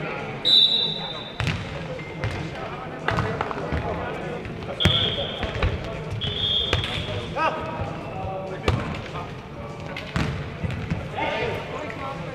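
A futnet ball being kicked and bouncing on an indoor hall court, a sharp thud every second or two, with players calling out. Short high squeaks come three times, the loudest about half a second in.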